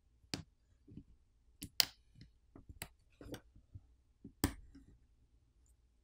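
Plastic pry tool popping flex-cable connectors loose on a smartphone's charger-port board: a handful of sharp, small clicks and ticks, the loudest about two seconds in and again about four and a half seconds in.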